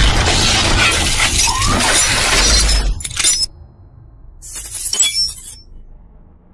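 Intro sound effect of glass shattering over music and bass, cutting off sharply about three seconds in. After a brief quiet, a shorter burst with bright clinking tones comes around the five-second mark.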